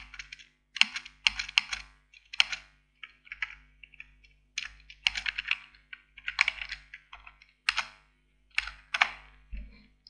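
Typing on a computer keyboard: key clicks coming in short, irregular bursts with brief pauses between them.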